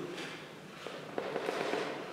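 A pause in a man's talk through a handheld microphone: low room noise with a few faint clicks and crackles about a second in.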